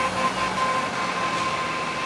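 Articulated city bus driving past: steady engine and road noise with a faint high whine.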